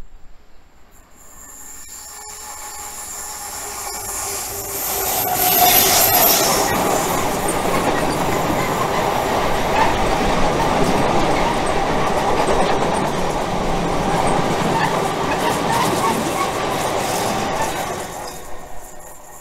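Diesel-hauled freight train of cement tank wagons passing on a curve. The locomotive grows louder as it approaches and passes about five seconds in. The wagons then roll by with steady wheel rumble, rail-joint clatter and wheel squeal on the curve, until the train has gone by near the end.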